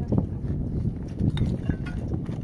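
A few sharp knocks and clacks of hollow concrete blocks being handled and set in place on a block wall, over a steady low rumble.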